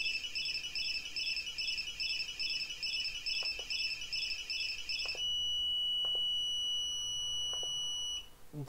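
Pololu Zumo robot's onboard buzzer sounding a fast, even stream of short high-pitched beeps. About five seconds in, it switches to one steady high tone.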